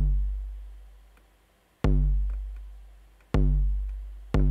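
Eurorack analog kick drum module fired by gate triggers from a GateStorm sequencer lane: single deep kicks, each with a long fading decay. One rings out from just before the start, and new hits land about two seconds in and again about a second and a half later.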